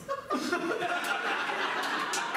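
Audience laughing, building up about a third of a second in and carrying on steadily.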